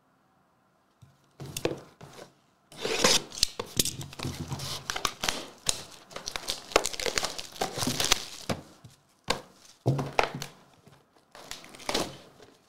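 Plastic shrink wrap being torn off a sealed trading-card box and the packs inside handled: irregular tearing and crinkling in rapid bursts, starting about a second in and pausing briefly twice near the end.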